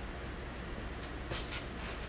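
Steady low hum over background hiss, with two short, faint scratchy sounds in the second half.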